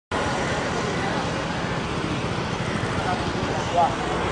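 Steady outdoor road ambience: traffic and crowd noise with indistinct voices, and a brief louder sound near the end.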